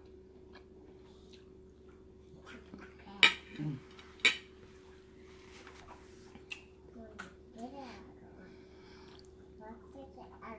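Metal fork clinking sharply against a plate twice, about a second apart, between quiet chewing and a murmured "mm", with a few lighter taps of cutlery later on. A faint steady hum runs underneath.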